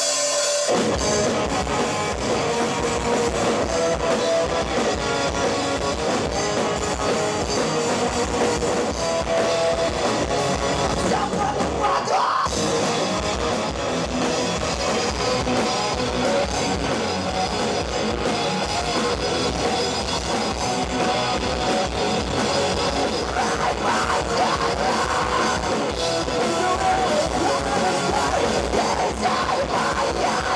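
Live rock band playing loud, with electric guitars, bass and drum kit. The band stops for a brief break about twelve seconds in, then plays on.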